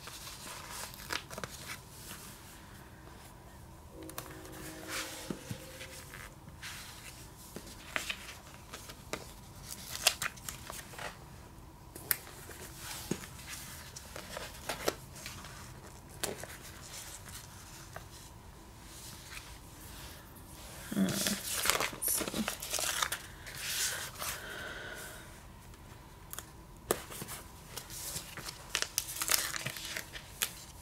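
Paper stickers being peeled off their backing sheets and pressed onto notebook pages, with the sticker sheets crinkling and rustling in scattered short crackles, busiest about two-thirds of the way through.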